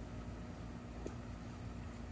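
Quiet, steady background hum and hiss with a faint low tone, and one faint tick about halfway through.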